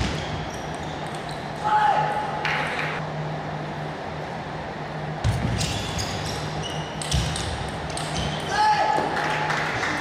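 A table tennis rally: the plastic ball clicking off the paddles and the table in quick, irregular succession, starting about five seconds in and ending a little before nine seconds, in a reverberant hall.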